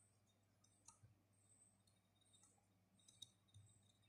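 Near silence with a few faint clicks and ticks of a marker pen and plastic ruler on paper as a straight line is drawn.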